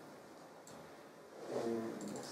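Quiet room tone with a faint click, then a short held hum from a man's voice near the end, a hesitation sound between remarks.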